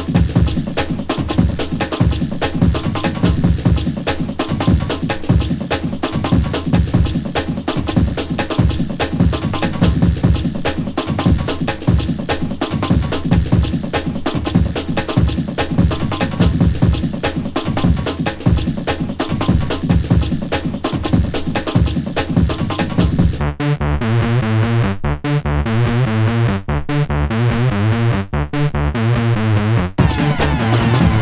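Early-1990s old skool hardcore track: synth chords over a dense, fast drum pattern. Near the end the drums drop out for a breakdown of chopped, stuttering synth chords.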